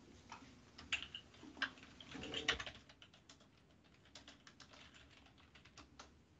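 Faint computer keyboard typing: scattered louder key clicks in the first half, then a quicker run of softer keystrokes.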